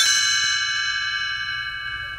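A single bell-like chime struck once, ringing on and slowly fading away.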